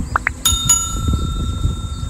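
A small metal bell struck twice in quick succession, about a quarter second apart, then ringing on with clear steady high tones. Just before it come two short rising chirps, over a constant low rumbling noise.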